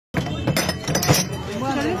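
Spent metal tear gas canisters clinking against one another as they are gathered up by hand, several sharp clinks in the first second. Men's voices start talking over them about a second and a half in.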